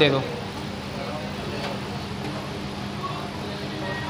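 Steady background din with a constant low hum and a traffic-like rumble.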